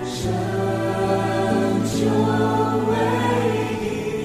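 Music: a choir singing a slow hymn in long held notes, with brief hissy consonants at about a quarter of a second and about two seconds in.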